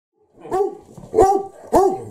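German Shepherd puppy barking three times, short barks about half a second apart that rise and fall in pitch. They are aimed at an older dog to get its attention.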